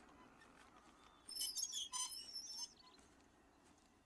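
Birds chirping: a short burst of high, rapid twittering starting about a second in and lasting about a second and a half, over a faint outdoor background.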